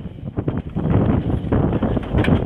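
Wind buffeting a phone microphone outdoors, a rough rumbling noise that grows louder about half a second in.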